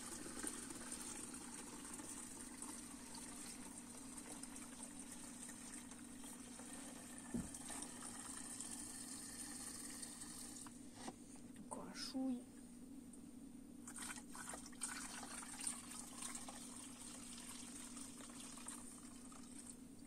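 Petrol pouring into a plastic water bottle, a faint steady splashing fill. The flow stops about ten seconds in, followed by a few light knocks.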